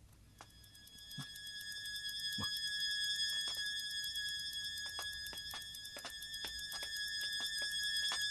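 Eerie background music: sustained high synthesizer-like tones that swell in over the first couple of seconds and then hold, with scattered faint clicks.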